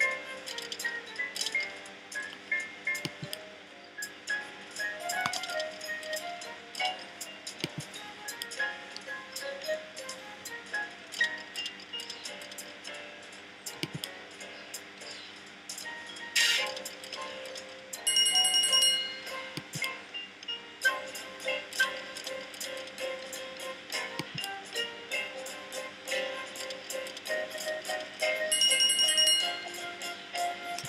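Online slot game's music and sound effects as the reels are spun again and again: a running pattern of short melodic notes and clicks, with a louder bright chiming jingle twice, about eighteen seconds in and near the end, the second as a small win lands.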